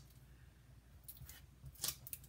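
Backing liners peeled off strips of double-sided tear-and-tape adhesive: mostly quiet, with a few faint short rustles of the liner in the second half.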